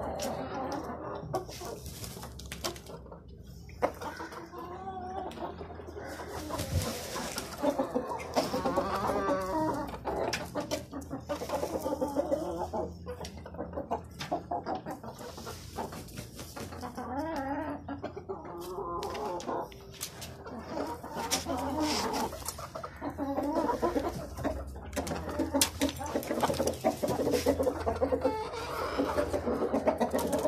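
Several desi aseel chickens, hens and roosters, clucking and calling on and off, with a few short sharp clicks between the calls.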